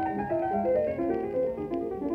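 Piano music: a stream of short notes stepping up and down over lower chords, with the dull, narrow sound of an old broadcast recording.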